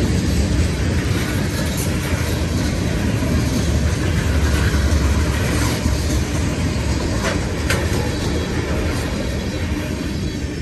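Freight train of covered hopper cars rolling past at close range: a steady low rumble of steel wheels on rail, with a couple of brief sharper clicks a little after the middle.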